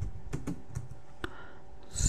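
Computer keyboard typing: a handful of separate, unevenly spaced keystrokes.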